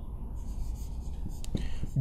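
Faint scratching of a felt-tip marker on a whiteboard as letters are written, the strokes clearest in the second half, over a low steady room hum.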